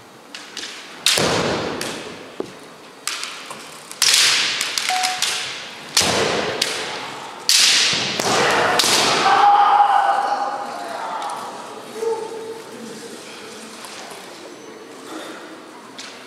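Kendo exchange: bamboo shinai strikes and stamping feet on a wooden floor, with the fencers' kiai shouts, echoing in a large hall. A series of sharp cracks comes between about one and eight seconds in, followed by a long drawn-out shout that fades.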